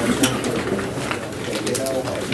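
Indistinct, low-pitched voices of several people talking at once across a meeting table in a small room, with a few sharp clicks and rustles from papers being handled.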